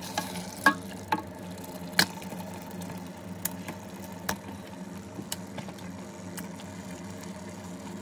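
Raw meat chunks being stirred with a wooden spatula in a large metal pot of hot spiced oil: a steady sizzle with scattered clicks and knocks of the spatula against the pot, the loudest about two seconds in. A low steady hum runs underneath.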